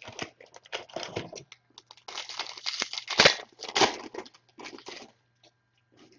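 Plastic trading card pack wrapper being torn open and crinkled by hand: a run of irregular rustling bursts, busiest in the middle, with one sharp crackle about three seconds in.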